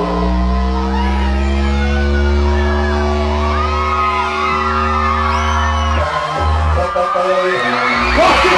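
Live electronic rock music from the band's synth: a held synth chord over a deep, steady bass, with a crowd whooping and cheering over it. About six seconds in the chord breaks off and the bass stutters.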